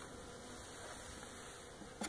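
Faint, steady buzzing of honeybees around an open hive.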